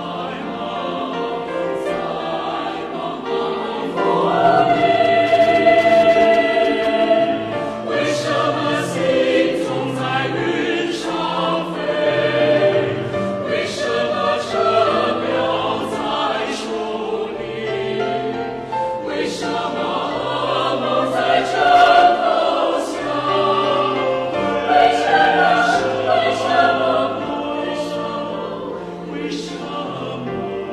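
Mixed choir of men's and women's voices singing a choral song in harmony, growing louder about four seconds in and easing off near the end.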